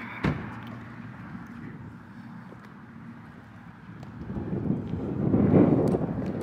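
A car door shuts with a single thump, then a low rumble of wind on the microphone that swells louder near the end.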